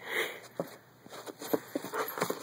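A puppy chasing its own tail: a short breathy sniff at the start, then a quick run of light clicks and scuffs as it scrambles after the tail.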